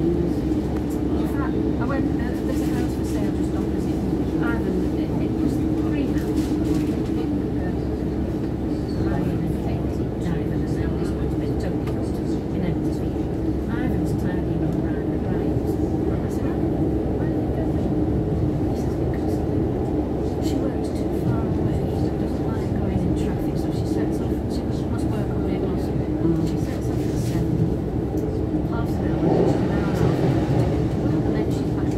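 Inside the carriage of a Class 150 Sprinter diesel multiple unit running along the line: a steady drone from its underfloor diesel engine and the rumble of wheels on rail, with scattered faint clicks from the track.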